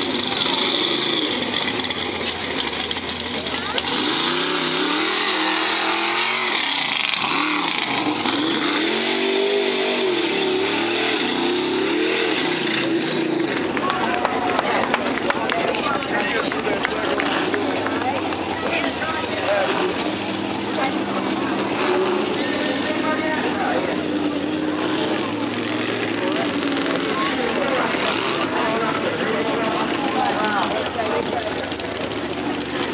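Engine of a lifted mud-bog truck revving up and down repeatedly, mixed with people talking. Partway through the sound changes abruptly, and the engine continues more faintly under the voices.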